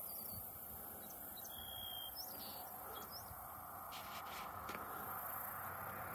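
Faint, steady outdoor background hiss with a few brief, thin bird chirps and one short whistled note scattered through it.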